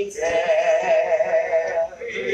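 A woman singing a hymn, holding one long note with a wavering vibrato that ends just before the close.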